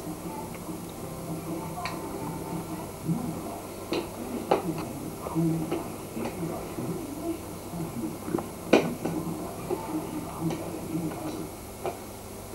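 Scattered light clicks and taps of a baby's spoon knocking against a food tub and the high-chair tray, the sharpest a little before nine seconds in, over a low steady hum.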